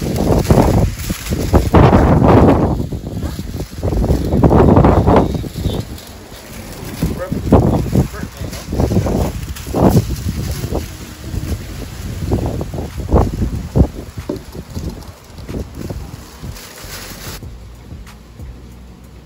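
Gusty wind buffeting the microphone in loud, uneven bursts, with indistinct voices underneath. The wind noise drops away abruptly near the end.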